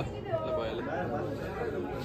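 Chatter: people talking, with voices overlapping.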